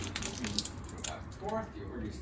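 Raw spot prawns being pulled apart by hand, the heads twisted off the tails: crackling of shell and wet squishing, with a quick string of clicks in the first second.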